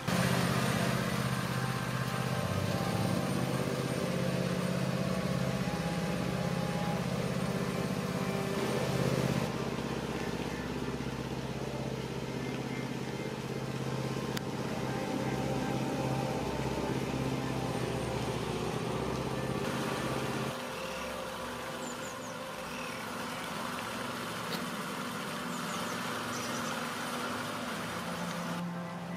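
Steady low drone of a motor vehicle's engine running, over a haze of outdoor noise; the drone drops away suddenly about two-thirds of the way through, leaving quieter background noise.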